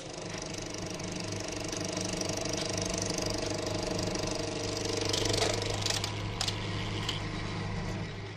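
Steady mechanical running sound, a low hum with a fast rattle, with a few brief clicks in the second half.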